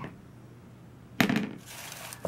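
Crinkle-cut paper shred filler and packaging rustling and crackling as hands dig into a cardboard gift box, starting suddenly just over a second in.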